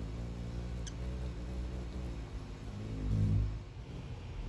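Hummingbird wings humming as it hovers at a nectar feeder, the hum wavering and swelling loudest shortly before the end as the bird moves close. A single short high chip call about a second in.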